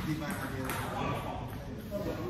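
Table tennis ball clicking off paddles and table as a rally gets under way, over people talking in a large hall.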